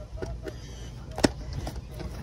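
A single sharp plastic click as a hand handles a clear plastic tackle box on a kayak deck, with a few softer knocks, over a steady low rumble.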